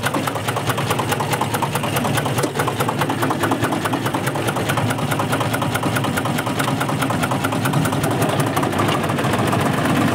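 Fortschritt RS09 tool-carrier tractor's diesel engine idling steadily, with an even, rapid knocking beat.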